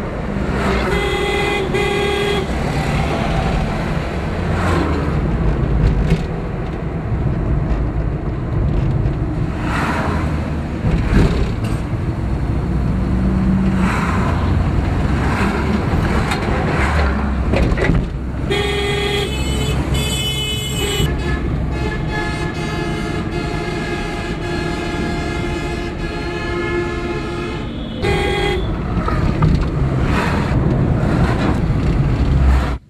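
Highway traffic heard from inside a moving car: steady engine and road rumble with vehicles passing close by, and repeated vehicle horns. A short horn blast comes about a second in, more horn blasts come in the second half, and one horn is held for several seconds before a final short toot near the end.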